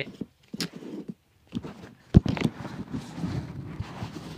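Handling noise from cards and packs: a few soft taps, one sharp knock about two seconds in, then steady rustling.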